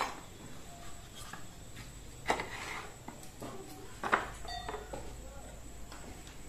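Steel knife blades and tools knocking and clinking as they are handled, three sharper knocks (at the start, a little past two seconds and around four seconds) with lighter taps between and a short metallic ring after the last.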